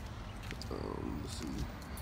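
A man's voice, briefly, over a steady low background rumble, with one small click about half a second in.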